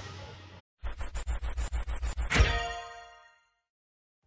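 Segment-transition sound effect: a guitar music track fades out, then rapid ticking for about a second and a half ends in a bright ding that rings and fades away.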